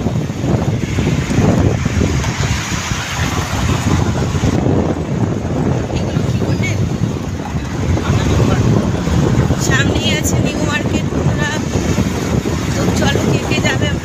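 Wind buffeting the microphone of a phone filming from a moving vehicle on a city road, with traffic noise underneath; a few brief high warbling chirps come about ten seconds in and again near the end.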